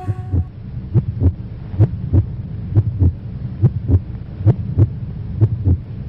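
Heartbeat sound effect: paired lub-dub thumps a little under one pair a second, over a low hum.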